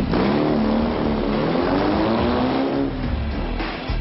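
An engine revving: its pitch climbs sharply at the start, holds, then drops away near three seconds in, with music underneath.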